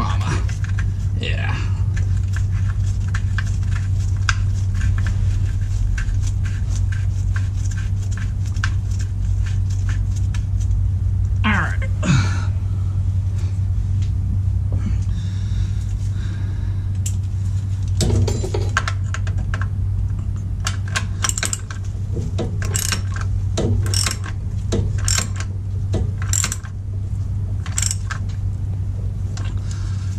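Socket ratchet clicking as a bell-housing bolt is run in, in runs of quick clicks, over a steady low hum.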